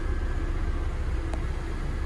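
Steady low rumble with a faint hum, and a single soft click a little past halfway.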